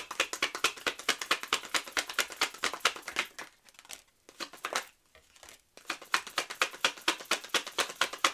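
A deck of tarot cards being shuffled by hand: fast runs of crisp card clicks, breaking off for a moment midway and then starting again.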